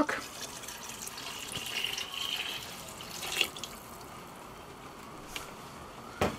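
Beef stock poured from a plastic measuring jug into a cast-iron Dutch oven of cooked onions, a steady stream of liquid filling the pot. The pour stops about three and a half seconds in.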